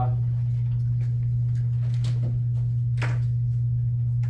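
A steady low hum, with a few faint knocks and rustles about two and three seconds in.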